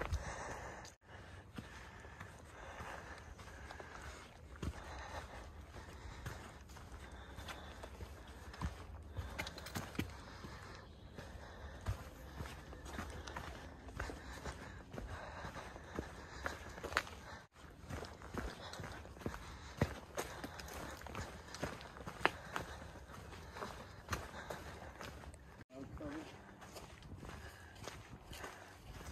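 Footsteps of a hiker walking along a rocky dirt trail, with irregular crunching steps over a steady low rumble.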